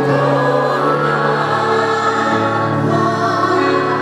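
Live gospel music: a choir singing long held chords over a steady band accompaniment.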